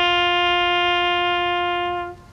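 Bugle sounding one long held note, steady and loud, after a short lower note just before it.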